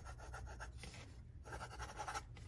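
Fine fountain-pen nib scratching quietly over paper in quick small writing strokes, with a short break just after a second in before the strokes resume.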